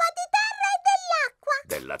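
Speech: high-pitched cartoon children's voices calling out an answer, followed near the end by a man's lower voice starting to speak.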